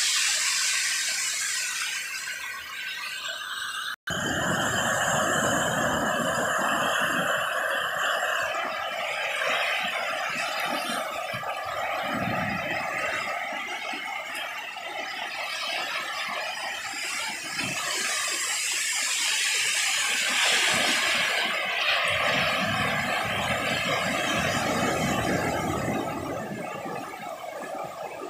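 Small waves washing onto a sandy beach, with wind buffeting the microphone in gusts. The sound cuts out for an instant about four seconds in.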